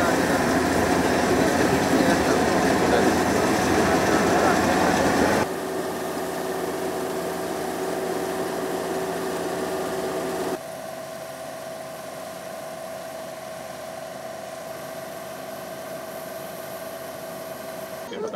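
Engine of a paddy-harvesting machine running steadily. It comes in three stretches, each quieter than the last, with sudden drops about five and ten seconds in.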